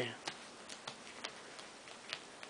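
A cat's claws picking and snagging at fabric as it plays: faint, irregular clicks, about six in two seconds.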